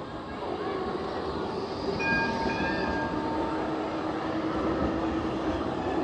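A tram running close by: a steady rumble with a brief high tone about two seconds in, then a steady hum from about three seconds on.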